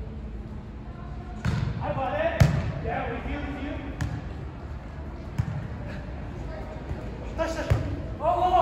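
Volleyball being hit back and forth during a rally: about six sharp hand-on-ball knocks at uneven intervals, the loudest about two and a half seconds in, heard in a big indoor sand-court hall. Players' voices call out between the hits.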